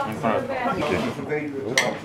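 Small glasses clink once, sharply with a brief ring, near the end, over people talking.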